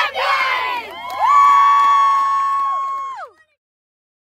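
Group of young children shouting a team cheer as they break a huddle. A short shout comes first, then many voices hold one long yell for about two seconds before sliding down and cutting off abruptly.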